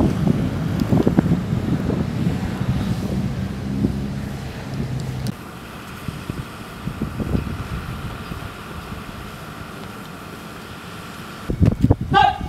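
Pickup truck engine running as the truck drives past, with wind buffeting the microphone. About five seconds in the sound cuts to a quieter background, and a loud voice breaks in near the end.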